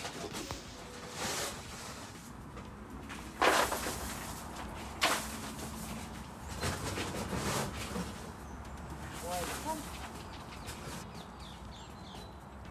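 A few short scraping and rustling strokes of a broom over a straw-strewn concrete stable floor, then faint bird calls near the end.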